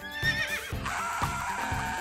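A horse whinny sound effect, about a second long with a wavering, falling pitch, over background music.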